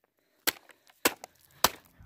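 Three sharp hammer blows, about half a second apart, striking a full plastic water bottle lying on a pebbled concrete patio.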